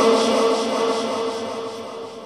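A man's voice holding one long sung note of a naat, fading away toward the end.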